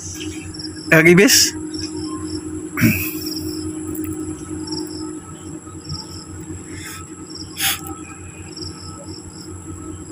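Insects chirping steadily: a continuous high-pitched trill with a pulsing chirp repeating beneath it. Short, louder voice-like calls break in about a second and three seconds in.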